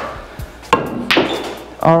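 Pool shot: the cue strikes the cue ball a little under a second in, followed by a second sharp clack of balls colliding about half a second later.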